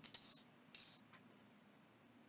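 Near silence with two faint, brief handling rustles as a bottle of tacky glue is held and tipped over paper, one just after the start and one a little before a second in.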